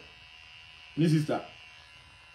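Electric hair clipper buzzing steadily under the talk, with one short spoken burst about a second in.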